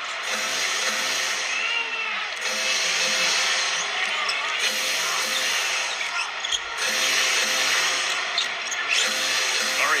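Live basketball game sound in a packed arena: a steady crowd din over the ball being dribbled and sneakers squeaking on the hardwood, with music playing in the arena.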